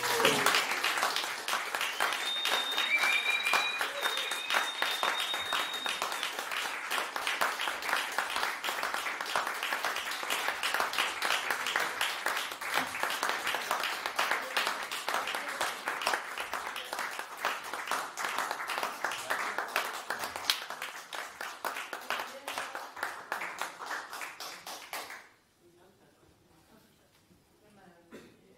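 Audience applauding after a song, with a steady high whistle from about two seconds in for a few seconds; the applause cuts off suddenly near the end.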